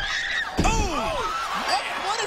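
A wrestler is slammed down onto the ring canvas with a loud thud about half a second in, and a voice cries out with falling pitch right after.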